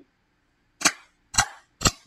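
Three sharp hand claps, about half a second apart.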